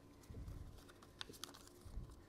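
Faint handling sounds of a paper-slip draw: a soft bump about half a second in, then a few light clicks as a hand reaches into a glass lottery bowl among the folded paper lots.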